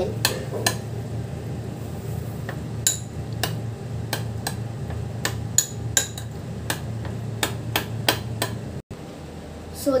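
Metal spoon clinking against a small bowl as a creamy mayonnaise and vegetable mixture is stirred: irregular light clicks, two or three a second, over a steady low hum.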